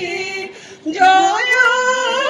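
A woman singing solo without accompaniment, long held notes with a wavering pitch; the voice drops away briefly about half a second in and comes back strongly about a second in.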